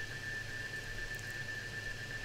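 Faint room tone: a steady low hum with a thin, steady high-pitched whine over it.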